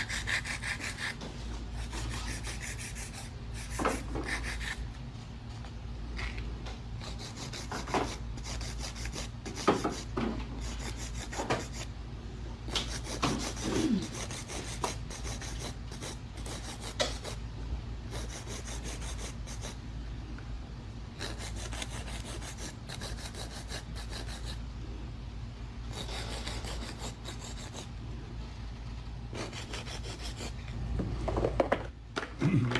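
Hand nail file rasping in quick back-and-forth strokes over long coffin-shape artificial nails, shaping them, with a few light knocks.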